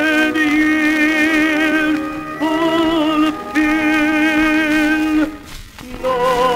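Acoustically recorded 78 rpm disc of a baritone singing a hymn with orchestra: long held notes with vibrato in short phrases, with a brief pause near the end as a phrase closes.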